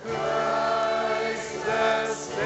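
A woman singing a song with a live worship band of piano, electric bass and drums. A loud new sung phrase comes in right at the start and holds long notes.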